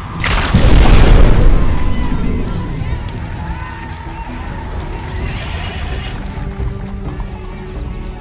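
Film soundtrack: a heavy boom just after the start that fades over about two seconds, over background music, with a horse whinnying around the middle.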